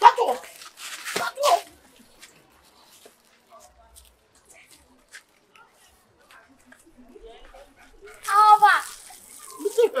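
Voices exclaiming briefly at the start, then a lull, then a loud, wavering vocal cry about eight seconds in. Faint water splashes onto the ground near the end.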